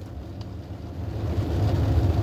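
Low vehicle rumble heard from inside a car's cabin, growing louder over the two seconds.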